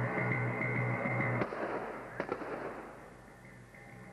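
Stage pyrotechnic blast going off at a fort set with a sharp bang about one and a half seconds in, followed by a quick pair of cracks under a second later, then a fading rumble. Background music plays up to the first bang and drops out after it.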